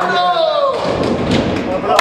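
A nine-pin bowling ball rolling down the lane in a bowling hall, under men's voices, with a sharp knock at the very end.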